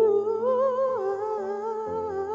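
A young male singer hums a wordless, wavering run with vibrato into a handheld microphone over a backing track of sustained chords. The pitch rises in the first second, then settles lower.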